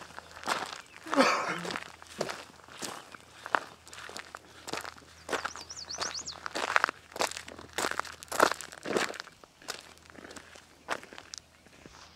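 Footsteps crunching on a gravel driveway at a steady walking pace, growing quieter near the end.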